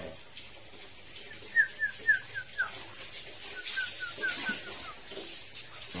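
Caged white-rumped shama giving two short runs of quick chirps, each run about five brief notes that slur downward, the second run a little lower than the first. The bird is molting and giving only these calls rather than full song.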